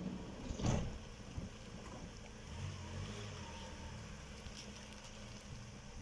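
Ambulance van's engine running quietly, with one short, sharp knock about a second in.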